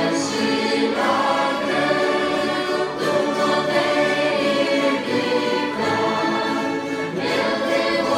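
Church youth orchestra of violins, mandolins and guitar playing a slow piece in sustained chords.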